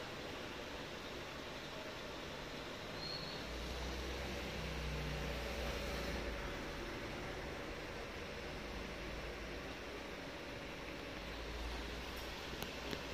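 Steady background hiss of room noise, with a low rumble that swells for a couple of seconds from about three and a half seconds in, and again near the end.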